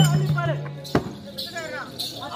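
Accompanying music for a village stage drama breaking off: a low held drone and drum strokes end with one sharp drum beat about a second in. A performer's voice is heard over it and carries on after.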